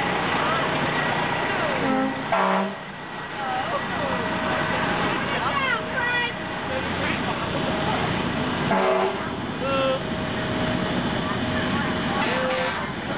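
A fire truck's horn sounds two short blasts, one about two seconds in and another about nine seconds in. Between them run the steady rumble of the passing parade trucks and the voices of the crowd.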